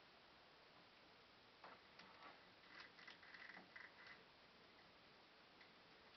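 Near silence, broken by faint small clicks and taps between about two and four seconds in: a plastic action figure being handled and fitted onto its display base.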